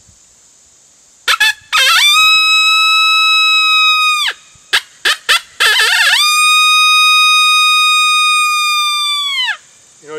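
Dogbreath open-reed coyote howler blown by mouth, giving friendly coyote howls: a couple of short blasts then a long steady howl that rises in and drops off at the end, then a few more short blasts and a second, longer howl that tapers off at the end. These are the friendly howls used to open a calling stand.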